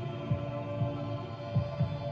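Eerie horror background music: a sustained droning chord with low thuds, some in pairs like a heartbeat, about once a second.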